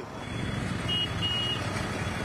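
Tractor diesel engines running with a steady low engine noise, with two short high beeps about a second in.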